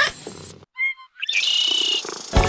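A short cat meow as a sound effect in a radio show jingle: a brief gap, one short pitched call a little under a second in, then a hissy passage with a steady high tone.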